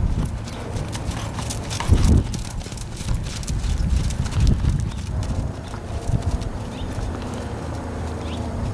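Hoofbeats of a ridden American Quarter Horse mare on soft arena dirt, irregular thuds with a louder thump about two seconds in.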